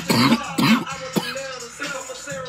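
A man coughing three times in quick succession, short harsh bursts within the first second and a half.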